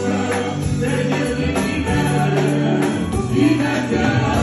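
Live gospel music: voices singing over a band with an electric bass guitar.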